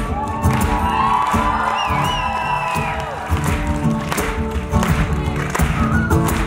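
Live band playing on electric guitars and bass guitar, with the crowd cheering over it and a high gliding whoop from the audience about two seconds in.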